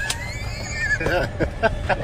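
A young girl's high-pitched laughing, in several short squealing bursts in the second half.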